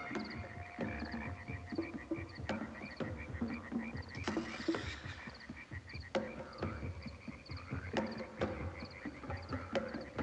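Rhythmic croaking calls repeating about four times a second, with a few sharp knocks scattered through.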